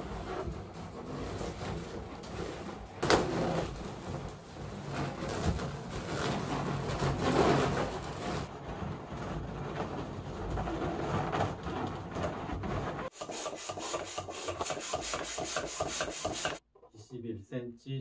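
Latex balloons rubbing against each other as they are handled and pressed into a balloon-ring frame, with a couple of sharp knocks in the first few seconds. The sound changes abruptly twice, and a voice comes in near the end.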